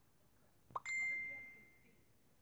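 A single bright ding about a second in, a clear high ringing tone that fades away over about a second.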